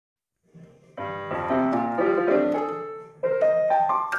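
Piano music: a phrase of chords begins about a second in, pauses briefly just after the three-second mark, then picks up with a rising run of notes.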